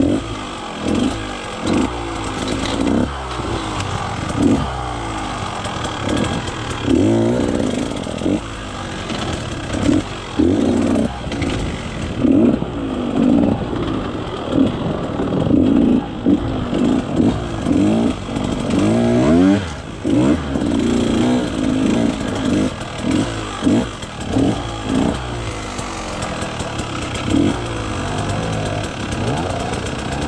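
KTM 150 XC-W single-cylinder two-stroke enduro engine being ridden over rough trail. It revs up and drops back again and again as the throttle is worked on and off, every second or two.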